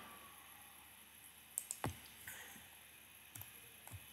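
A few faint computer mouse clicks, the sharpest one a little under two seconds in, over a low room hiss.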